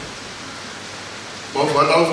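A pause filled by a steady hiss, then a man's voice through a microphone and loudspeakers starts again about one and a half seconds in.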